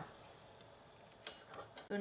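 Near silence: faint room tone, then a brief soft hiss about a second and a half in, just before speech resumes.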